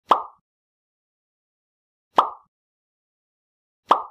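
Three identical short pop sound effects, about two seconds apart, each dying away within a fraction of a second, as on-screen elements pop into view.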